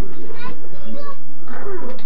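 Children's voices chattering and calling out over one another, with a steady low hum underneath.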